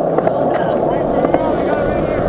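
Skateboard wheels rolling steadily over smooth concrete, a continuous rumble.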